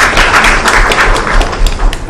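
Audience applauding: a dense patter of many hands clapping, which stops near the end.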